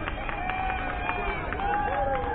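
Voices on a youth baseball field calling out in long, drawn-out shouts and chatter, some held for about a second, over a low steady rumble of wind on the microphone.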